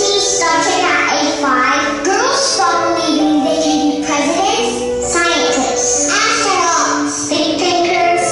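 A song playing from a projected video: a high singing voice carrying a gliding melody over instrumental backing.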